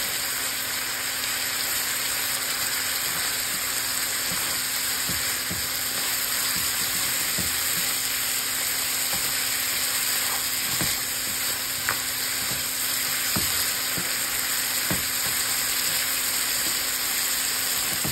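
Curry sauce of coconut milk sizzling and bubbling hard in a frying pan with pieces of snow crab, as the liquid boils down and thickens. The sizzle is steady, with a few scattered small pops.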